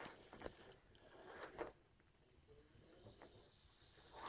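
Near silence, with a few faint clicks of plastic Lego gearbox parts being handled, about half a second and a second and a half in.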